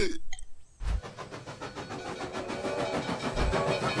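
Cartoon sound effect of a steam locomotive approaching, its running rattle growing steadily louder.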